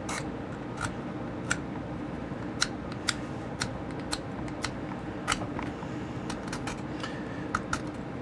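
Hand file scraping and clicking against the edges of a 3D-printed ABS plastic knuckle duster in short, irregular strokes, with a steady background noise underneath.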